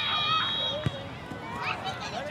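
Children's voices shouting and calling across the field, with one high held cry that stops about a second in, and a single sharp knock just before then.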